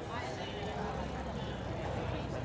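Busy city street ambience: overlapping voices of people on the sidewalk and at outdoor tables, over a steady low vehicle rumble that grows a little stronger about a second in.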